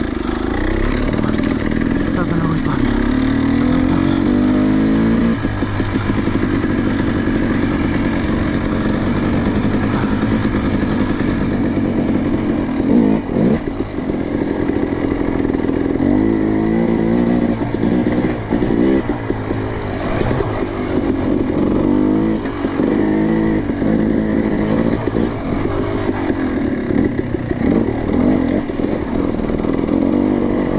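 Dirt bike engine being ridden on a trail, revs held fairly even for the first ten seconds or so, then rising and falling repeatedly as the throttle is opened and closed.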